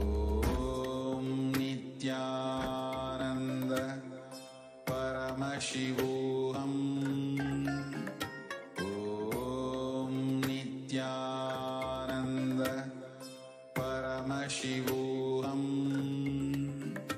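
Devotional mantra chant set to music, one chanted phrase repeating about every four to five seconds over held tones.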